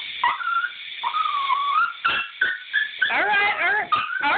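Small Pomeranian-Chihuahua mix dog vocalising in a bathtub: high, drawn-out whines that bend in pitch, with a few short sharp yips about two seconds in.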